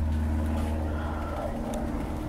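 A small engine or motor running steadily with an even low hum.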